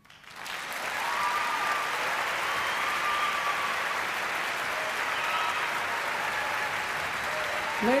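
Concert hall audience applauding, starting right after a brief silence as the music ends and holding steady, with scattered whoops and cheers.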